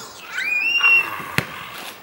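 A child's high-pitched squeal that rises and is held for about half a second, followed by a single sharp bang of the basketball striking, about a second and a half in.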